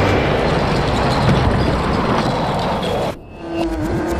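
Sound-effect rumble of stone masonry collapsing as a cathedral wall breaks apart. It cuts off suddenly about three seconds in, and a single held tone follows with a quick run of sharp clicks of falling stones.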